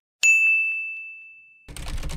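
A bright 'ding' sound effect: a single bell-like tone struck about a quarter second in, fading away over about a second and a half. Near the end, rapid keyboard typing starts.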